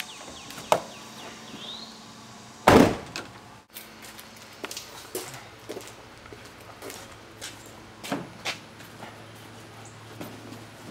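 A pickup truck's rear door slams shut about three seconds in, a single heavy thud that is the loudest sound, followed by a few light knocks and clicks.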